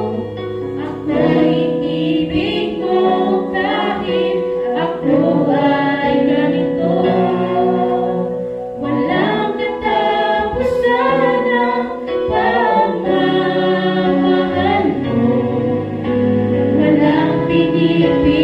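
Three voices, a man and two women, singing a Tagalog gospel song together into microphones, accompanied by an electronic keyboard holding sustained chords and a low bass line. There is a short breath between phrases about halfway through.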